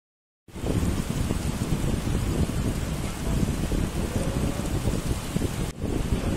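Heavy rain falling, a dense hiss with a strong low rumble, cutting in suddenly about half a second in, with a brief break just before the end.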